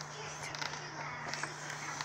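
Faint scraping and picking at a chalky plaster excavation block with a small digging tool, a few light scratchy ticks, over a steady low hum.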